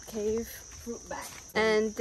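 Insects buzzing steadily in a mangrove forest, one constant high-pitched drone.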